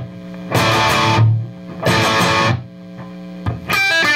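Overdriven electric guitar, a left-handed Gibson SG, playing a power-chord riff: two loud chord stabs, each ringing briefly, with quieter gaps between, then a quick run of single notes near the end.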